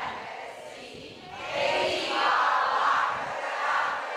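A room full of people laughing together, rising about a second and a half in and carrying on to the end.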